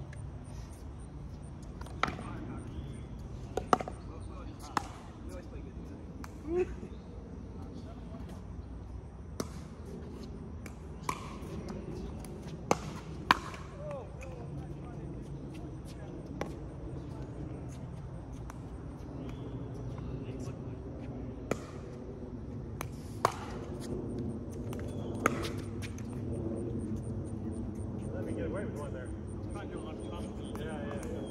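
Pickleball paddles hitting a plastic ball and the ball bouncing on the hard court: about a dozen sharp pops at irregular intervals, the loudest pair about halfway through. Faint voices talk in the background.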